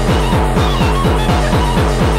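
Speedcore track: a fast, evenly repeating kick drum, several strokes a second, with short synth notes over it.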